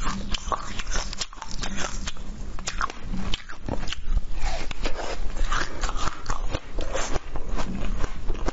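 Biting and chewing frozen fruit close to a clip-on microphone: a steady run of sharp crunching clicks.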